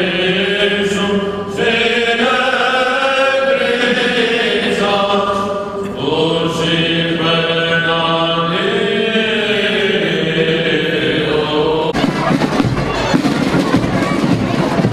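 Greek Orthodox Byzantine chant: male voices singing long held notes that glide between pitches. About two seconds before the end, it cuts abruptly to the noise of an outdoor crowd.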